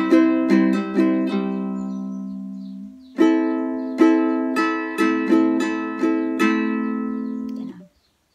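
Ukulele strummed in a down-down-up-up-down-up-down-up pattern: a quick run of strokes on one chord left ringing, then about three seconds in a second chord strummed with eight strokes and left to ring before being damped shortly before the end.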